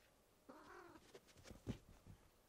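A cat gives one short meow about half a second in, followed by a few soft thumps, the loudest near the end.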